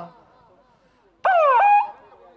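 A loud, high-pitched vocal whoop about a second and a quarter in. It lasts about half a second, swoops down in pitch, then jumps back up and holds.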